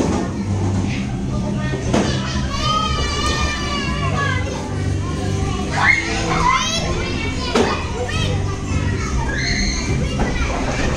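Children playing and calling out, a busy mix of young voices with high-pitched cries around three seconds in and again near seven seconds.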